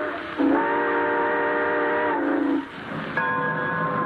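Train whistle, several notes sounding together as a chord: the end of one blast, then a long blast of about two seconds that sags in pitch as it cuts off. Orchestral music comes in near the end.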